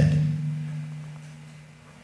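A single sustained low musical note that fades out steadily over about two seconds.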